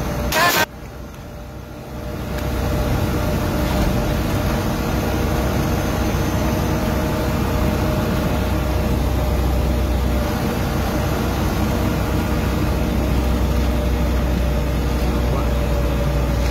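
Steady engine drone and road rumble heard from inside the cab of a vehicle driving along a highway, after a brief clatter about half a second in.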